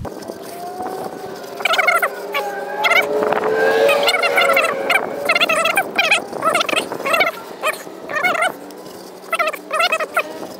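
Animal calls: a rapid warbling series that comes again and again, about eight times, over a steady low hum.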